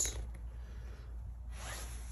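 Quiet room with a steady low hum, and a soft, brief rasping noise near the end.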